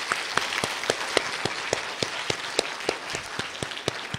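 Audience applauding, the many claps thinning and dying down toward the end.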